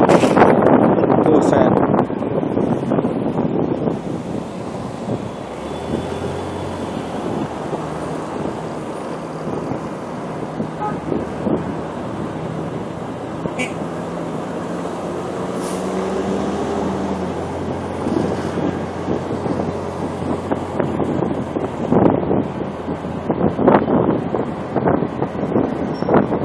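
Motorcycle engine running while riding through city traffic, its hum rising and falling in pitch as speed changes, with wind buffeting the microphone, strongest in the first two seconds.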